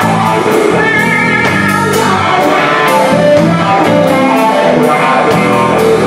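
Live blues band playing an instrumental passage: electric guitars over a drum kit keeping a steady beat.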